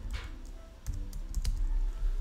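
Typing on a computer keyboard: a handful of separate key clicks at uneven intervals.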